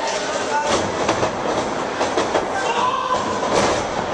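Wrestlers' bodies and feet thudding and slapping on the ring canvas, several separate impacts, over crowd chatter and shouting.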